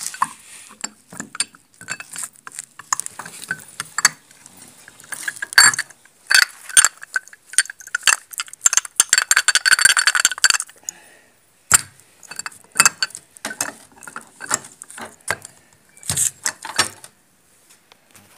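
Metal clicking and clacking as a piston is rocked back and forth on its connecting rod, the gudgeon pin knocking in the smashed small-end bushing of a Foton engine's connecting rod. The clicks come irregularly, running together into a fast rattle a little past the middle.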